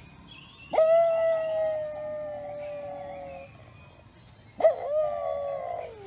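A dog howling twice. First comes one long howl of about three seconds on a steady pitch that sags slightly. Then, about a second later, a shorter howl swoops up and trails downward.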